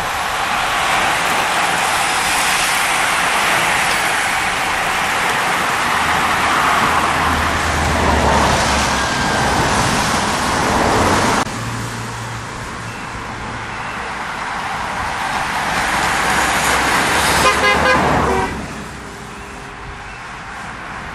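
A passing road-race bunch and its following cars on a wet road: a steady rush of tyres and car engines that breaks off abruptly about halfway, then swells again as more vehicles approach. A car horn toots briefly near the end.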